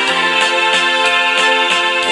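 Live music from a keyboard and electric guitar duo: held keyboard chords over a steady beat of about three strokes a second, played from a Roland G-1000 arranger keyboard.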